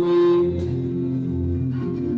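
Acoustic guitar played with sustained, ringing notes, with a man's sung note trailing off in the first half second.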